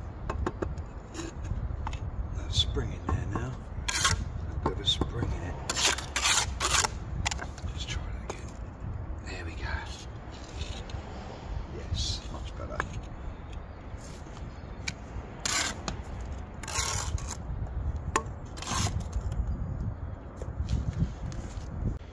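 Bricklaying work: a steel trowel scraping mortar and knocking against bricks as half bricks are laid and levelled. The sound is a series of scattered sharp scrapes and knocks, grouped about four to seven seconds in and again from about fifteen to nineteen seconds, over a steady low rumble.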